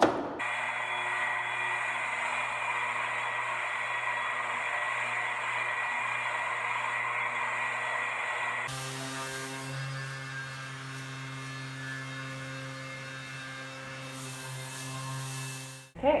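Bosch GEX 12V-125 cordless random orbital sander running with a steady hum. About two-thirds of the way in the sound changes to a deeper, stronger hum as the sander works on a wall.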